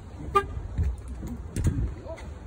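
A single short car-horn toot about a third of a second in, over a low steady rumble.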